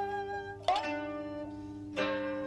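Background music: a plucked string instrument holding long ringing notes, with a fresh note struck about two-thirds of a second in.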